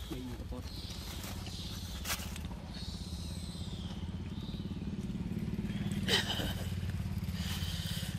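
A small engine running steadily in the background: a low, even rumble, with a couple of sharp clicks about two and six seconds in.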